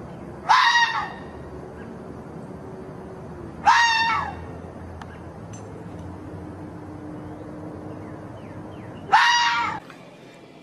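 Red fox calling: three high, hoarse-free single calls, each about half a second long and dropping in pitch at the end, a few seconds apart, the last near the end.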